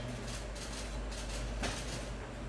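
A few camera shutter clicks, the loudest about one and a half seconds in, over a steady low room hum.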